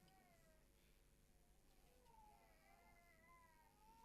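Near silence: room tone with a faint, high, wavering voice-like sound in the distance.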